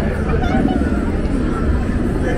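Indistinct chatter of passersby, over a steady low rumble.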